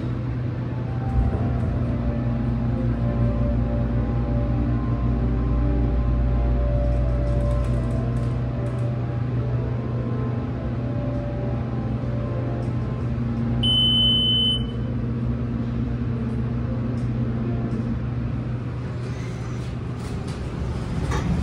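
Submersible pump motor of an MEI hydraulic elevator humming steadily as the car rises, with a deeper rumble over the first several seconds. About two-thirds of the way in, a single high electronic beep sounds for about a second, the cab's arrival chime.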